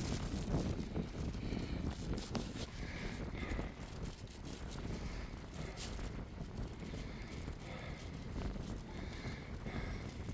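Wind buffeting the microphone: an irregular low rumbling noise, a little louder in the first few seconds.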